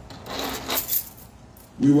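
A brief rustling clatter, about a second long, of something being handled at the pulpit close to the microphone. A man begins speaking near the end.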